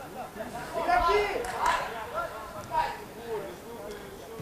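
Footballers' voices shouting and calling to one another on the pitch, faint and distant, in a couple of short bursts about a second in and again near three seconds.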